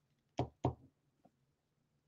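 Two quick knocks about a quarter of a second apart, near the start.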